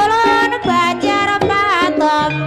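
Live gamelan ensemble playing ebeg dance accompaniment: struck metal tones and hand-drum strokes under a high, wavering lead melody that bends in pitch.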